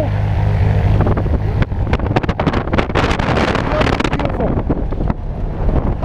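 Single-engine light aircraft's propeller engine running on the ground, a steady low hum, with the propeller wash buffeting the microphone in gusts through the middle stretch.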